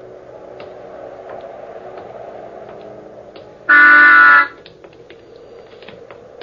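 Radio-drama sound effect of a car horn honking once, a loud flat blast of under a second a little past halfway through, over a faint background with light scattered ticks.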